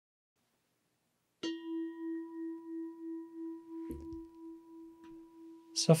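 A meditation bell struck once, about a second and a half in, ringing with a steady tone that wavers in loudness as it slowly fades. A brief soft knock comes about four seconds in.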